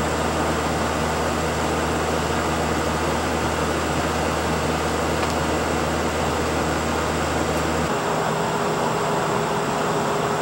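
Steady machine hum with an even hiss over it. About eight seconds in the deep hum drops away, leaving a higher steady tone.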